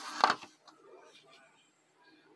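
Handling noise close to the microphone: a loud, brief rustle in the first half-second, then faint rustling and small taps for about a second.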